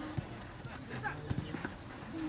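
Players' voices calling across a football pitch during play, with a few sharp, short knocks.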